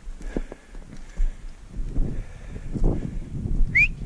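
Footsteps over stony ground, with brushing through scrub and low handling noise. Near the end there is one short, high chirp that rises in pitch.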